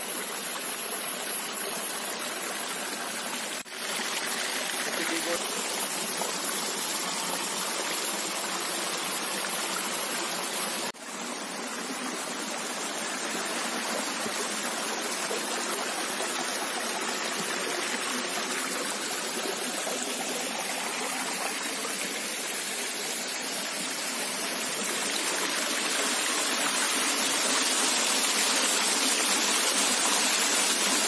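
Shallow stream running over rocks and small cascades: a steady rush of water that drops out briefly twice, about four and eleven seconds in, and grows louder near the end as falling water comes close.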